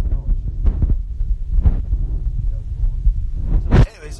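Low, throbbing road rumble inside a moving Tesla's cabin, picked up by a handheld phone microphone, with irregular thumps and a louder burst near the end.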